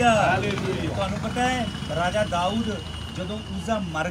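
A man speaking animatedly, over a steady low hum. A faint thin high whine sounds through the second half.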